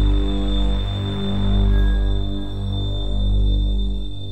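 Low, steady drone from the suspense score, a dark hum that slowly swells and fades about every second and a half.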